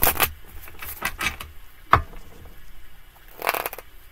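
A tarot deck being shuffled by hand: a flurry of card flutter and slaps just after the start, a sharp snap about two seconds in, and another flurry near the end.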